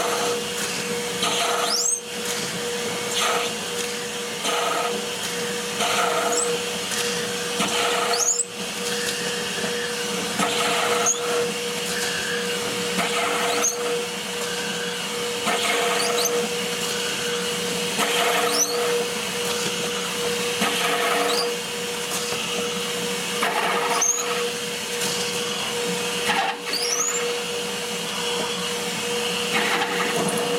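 Drill press running with a steady motor hum as the bit is peck-drilled down through a thumb slug set in a bowling ball, the cutting noise coming in repeated short plunges every second or two.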